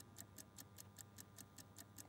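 Faint, quick, evenly spaced ticking, several ticks a second: a clock-style countdown sound effect running under the on-screen price-drop timer.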